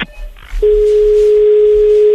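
A steady single-pitch telephone line tone starting about half a second in, loud and unbroken: the call has been cut off.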